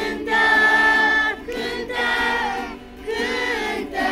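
A group of children singing a song together, accompanied by an acoustic guitar.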